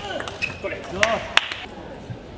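Sharp clicks of a table tennis ball off bats and table, the loudest two about a second in and a third of a second apart, with short squeaks of shoes on the court floor.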